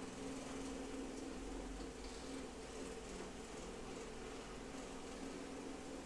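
A steady low hum with hiss: room tone.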